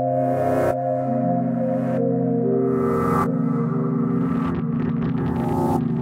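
Korg opsix FM synthesizer playing its 'Rasp & Static' factory preset: held chords, changed a few times, with bursts of hissing static washing over them. It is a moving, effects-heavy patch.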